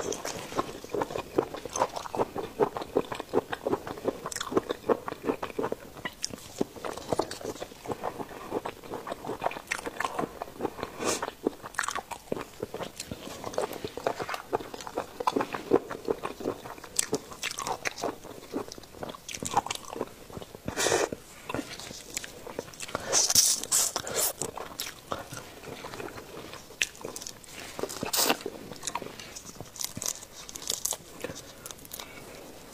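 Close-miked wet chewing of raw seafood: dense, quick, moist mouth clicks through the first half. Then come sparser crackles and clicks as raw shrimp are peeled by gloved hands, with a few sharper snaps of shell in the second half.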